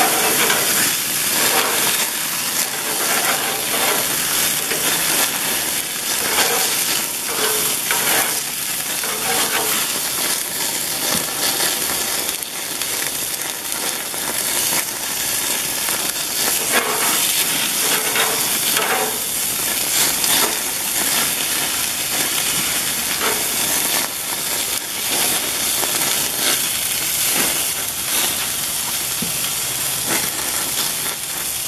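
Hamburger patties sizzling on a grill grate over open flames: a steady hiss with many small crackles as fat drips into the fire and flares up.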